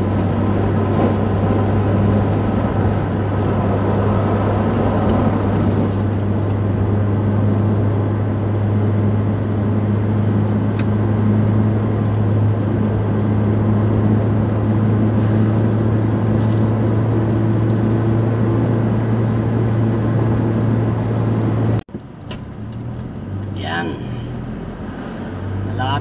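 Steady drone of a car cruising at highway speed, heard from inside the cabin: engine and tyre noise with a low, even hum. About 22 seconds in it cuts off suddenly and gives way to quieter, slower driving sound.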